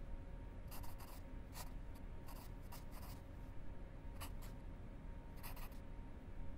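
Pencil writing on paper: a handful of short, irregular scratchy strokes over a faint steady hum.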